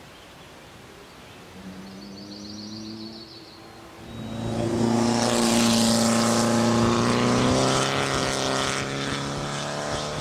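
Porsche 911 flat-six engine running at steady revs. It comes in faintly about one and a half seconds in, grows much louder about four seconds in, and holds an even pitch before easing off slightly near the end.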